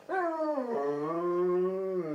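Alaskan malamute howling: a short falling note, then after a brief break a longer, steady note.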